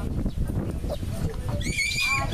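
Excited shouting from people along a rabbit-race track, ending in a shrill, high-pitched yell about one and a half seconds in, over a low rumbling background.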